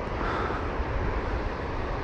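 Steady rushing of surf breaking along the beach, with low wind rumble on the action camera's microphone.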